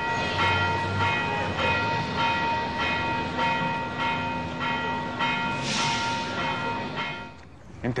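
A bell ringing with evenly repeated strokes, a little under two a second, fading out about seven seconds in.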